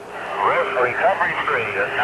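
A man's voice over a radio link, thin and cut off at the top like a transmission, with a steady hum beneath it.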